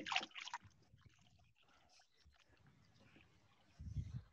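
Soapy hands dunked and swished in a bucket of water to rinse, faint sloshing in the first half second. Near the end, a short low bump.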